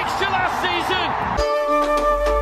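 Football match broadcast audio, a voice over stadium crowd noise, cut off abruptly about one and a half seconds in by background music of held notes over a rising bass.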